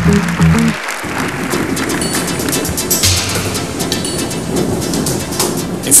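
A theme tune with heavy bass notes breaks off about a second in. It is followed by a steady, dense clattering noise, the balls of a Totoloto lottery draw machine tumbling as the supplementary ball is drawn.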